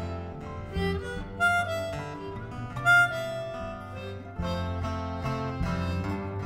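Harmonica solo in a live band recording: held, wavering notes that move in pitch, with two sharp high accents about one and a half and three seconds in, over strummed guitar and a steady bass line.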